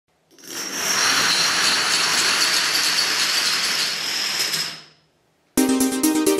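Thousands of dominoes toppling in a chain reaction, a dense clatter that builds up within about half a second, runs steadily for about four seconds and dies away. Electronic music with a steady beat starts sharply just before the end.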